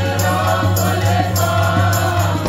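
Sikh kirtan: a hymn sung by several voices together over a harmonium's steady low held notes, with tabla strokes keeping the beat.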